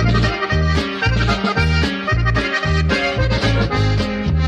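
Instrumental interlude of a norteño corrido: an accordion plays the melody over a steady bass line that moves back and forth between notes in an even rhythm.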